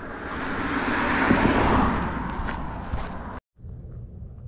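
A car passing along the road: its tyre and engine noise swells to a peak about a second and a half in and then fades. Near the end the sound cuts off abruptly, and a quieter open-air background follows.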